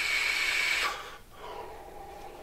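A long draw on a handheld vape: an airy hissing inhale through the device that stops a little under a second in. A quieter, longer exhale of the vapour follows.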